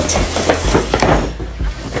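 A large stiff paper shopping bag rustling and crinkling as a big cardboard gift box is slid out of it, with a run of short crackles and scrapes.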